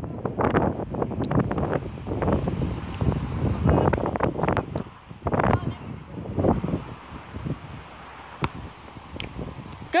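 Wind buffeting the microphone in gusts, heaviest in the first half and easing off later, with a few sharp clicks, the clearest about eight and a half seconds in.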